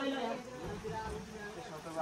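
Faint voices of people talking at a distance.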